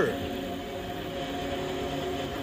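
Background ambient music: a steady drone of several held tones with a faint hiss beneath.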